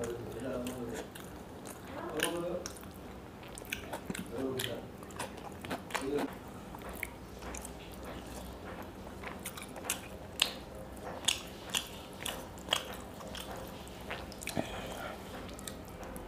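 Close-up chewing and lip-smacking as a person eats fried fish by hand, with many sharp wet mouth clicks, the loudest about ten and eleven seconds in.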